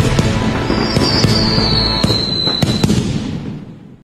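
Fireworks sound effect over background music: several sharp bangs and crackles, with a high whistle that falls slightly in pitch, all fading out near the end.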